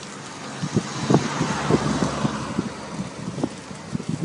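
A car passing on the road, its noise swelling to a peak about two seconds in and then fading, over irregular low pops.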